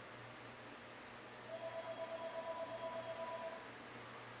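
A steady pitched tone, about two seconds long, starting about a second and a half in and wavering slightly in loudness, over a faint constant hum.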